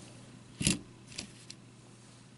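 A small plastic toy truck, a Transformers figure in vehicle mode, set down on a cloth-covered table with one sharp knock, followed by two lighter clicks as it is nudged into place.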